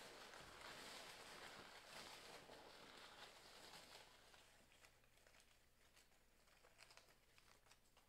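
Near silence: faint room tone, with a few faint light clicks in the second half.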